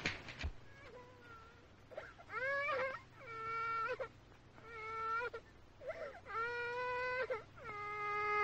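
A baby crying in a series of drawn-out wails, one after another, starting about two seconds in. Each cry rises at the start, holds steady for most of a second, then breaks off briefly before the next.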